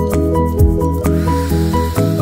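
Background music, and about a second in, a hair spray bottle sprays one long mist onto the hair for just under a second.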